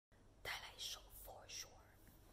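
A woman whispering softly: a few breathy words in four short bursts within the first second and a half.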